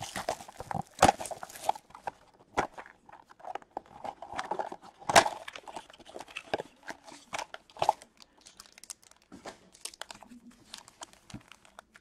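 Clear plastic wrap crinkling and tearing as it is stripped off a cardboard hockey card blaster box, then the box flap opened and foil card packs handled, in irregular crackles and rustles with a few sharper snaps.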